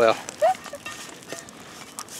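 A man's voice finishing a sentence with one word, then a low, even outdoor background with two brief faint tones about half a second and just over a second in.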